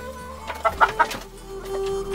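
Hen clucking: three loud, quick clucks about half a second to a second in, over steady instrumental music.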